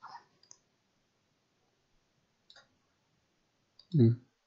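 A few soft computer mouse clicks, scattered and sparse. The clicks come at the start, about half a second in, twice around two and a half seconds, and again just before the end.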